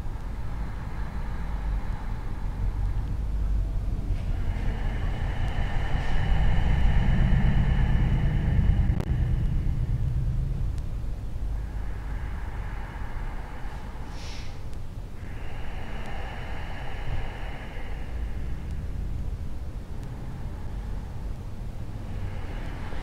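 A low rumble that swells to its loudest about seven to nine seconds in, then eases back, with a fainter steady hiss above it.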